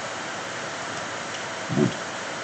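Steady hiss of the recording's background noise, with one spoken word near the end.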